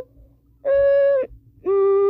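A person's voice making a series of held, steady notes, each about half a second long, the second lower in pitch than the first.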